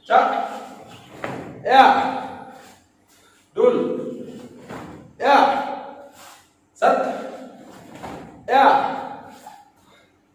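A man's sharp shouts, one with each jumping turning kick, six in a row about a second and a half apart, each ringing on in a large hall.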